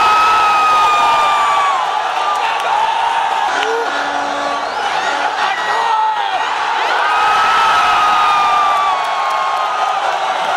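Football stadium crowd cheering and shouting through the penalty kicks, a dense continuous noise. A long, slightly falling high note is held over it near the start and again from about seven seconds in.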